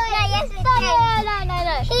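Children's voices talking, with a high child's voice drawing out its words.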